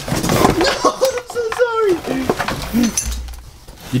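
Crackling and rustling of a plastic bag and cardboard box being handled and pulled at. A drawn-out vocal sound follows from about one to two seconds in.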